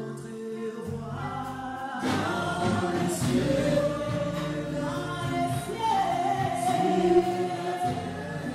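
A church congregation singing a gospel worship song together, with musical accompaniment; the singing swells louder about two seconds in.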